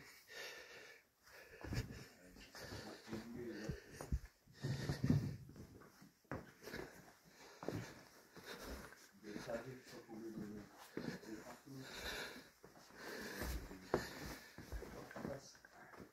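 A person breathing hard while clambering over loose stone rubble, with footsteps scraping and stones clicking underfoot every second or two.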